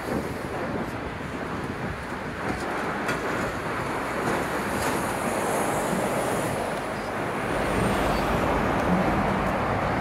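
Steady road traffic noise from a busy dual carriageway, cars passing below with tyre and engine noise, growing a little louder with a deeper rumble in the second half.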